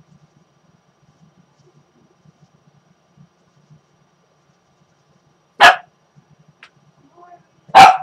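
A dog barks twice, loud and sharp, about two seconds apart, the second near the end, over a faint low murmur.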